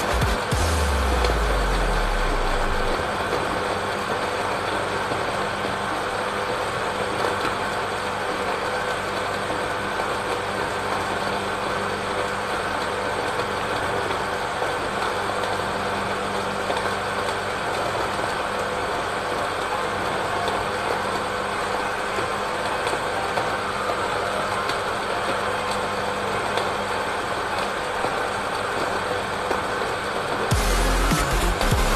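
Electric countertop blender motor running steadily at speed, blending a liquid mix of dates, milk, water and ice until smooth.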